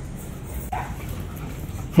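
An American Bully puppy gives a short, faint whimper about a second in, over steady background noise.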